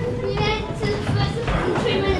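Indistinct, fairly high-pitched voices of other people talking.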